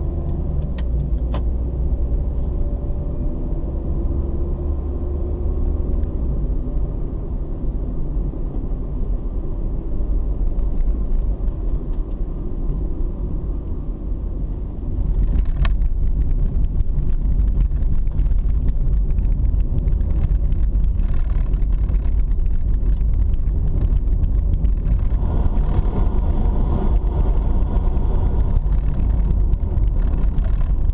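Car engine and tyre road noise heard from inside the cabin while driving, a steady low rumble with the engine pitch shifting early on. About halfway through the noise steps up and becomes louder and rougher, then holds there.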